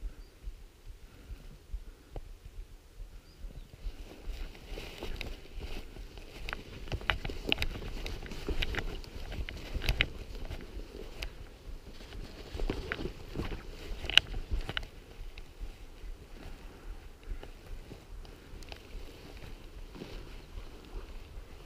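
Footsteps and rustling of brush against clothing and gun as a hunter pushes through dense scrub, with scattered sharp clicks and snaps. It is busiest in the middle, with the loudest snap a little past the middle, and eases off toward the end.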